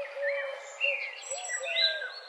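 Birds chirping: several short, overlapping whistled calls that rise and fall in pitch, starting abruptly out of silence.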